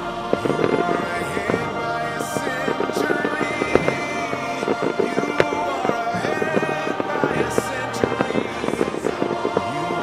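Fireworks crackling in dense clusters, with a couple of sharper bangs, over a music soundtrack.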